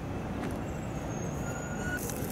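Steady low rumble of outdoor vehicle and machinery noise, with a faint thin high tone in the second half.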